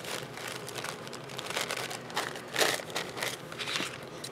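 Coffee filter paper rustling and crinkling as it is picked up and handled, in a few short bursts, the loudest a little past halfway.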